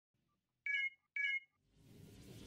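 Two short electronic beeps, each about a quarter second long and about half a second apart, as an intro sound effect; near the end a music swell begins to rise.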